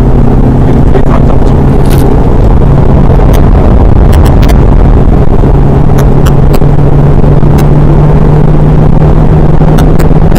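BMW 120d's four-cylinder turbodiesel pulling hard at track speed, heard from inside the cabin as a loud, steady drone with road and tyre rumble; the engine note rises slightly about halfway through. Scattered sharp clicks sound over it.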